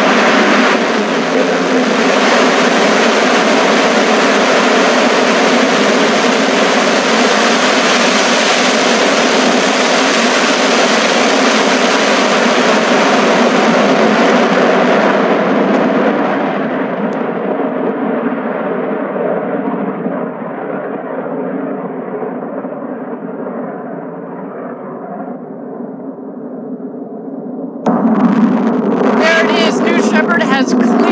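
Blue Origin New Shepard's BE-3 liquid-hydrogen rocket engine at liftoff: a loud, steady rumble as the rocket clears the tower. From about halfway on, its hiss fades and the sound grows quieter as the rocket climbs away. About two seconds before the end a loud noise cuts back in abruptly.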